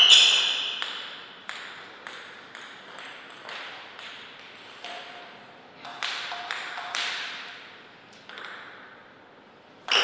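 Table tennis ball sounds: a loud sharp hit at the start, then a celluloid-style plastic ball tapping about twice a second and fading. Near the end a rally begins with a quick run of sharp bat-and-table hits.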